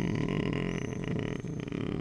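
A man's low, creaky, drawn-out hesitation sound in the throat ('э-э') between words.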